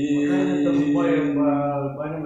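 A man's singing voice holding one long, steady note of a slow pop ballad.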